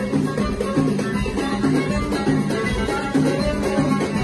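Live Moroccan chaabi band playing an instrumental passage with a steady, rhythmic groove: violin, keyboard and percussion.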